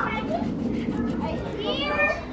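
Children's voices in play: chatter and calls, with a high voice rising in pitch near the end.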